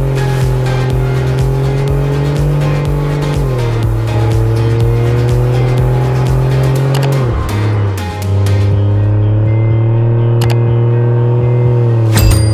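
A car engine pulling steadily, its pitch creeping up and dropping sharply twice, about three and a half and seven seconds in, as it shifts up a gear, mixed over background music with a steady beat.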